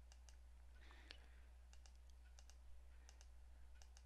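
Faint computer mouse clicks, about a dozen scattered through, over a low steady hum.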